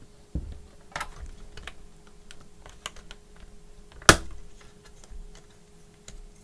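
Plastic clips of a laptop display's hinge cover clicking and creaking as the cover is pried off by hand, with one much louder snap about four seconds in.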